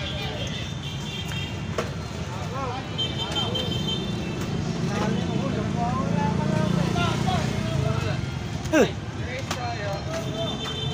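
People talking over a steady low vehicle and street-traffic hum, with one sharp, quick falling sound near the end.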